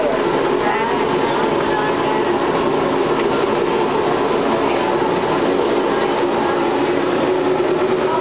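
Steady mechanical hum of a passenger elevator, with a low even drone, under people talking quietly.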